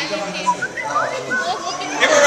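Audience chatter with scattered short, high-pitched calls from fans in the crowd.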